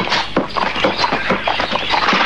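A quick, even run of hard knocks, about five a second, keeping up steadily.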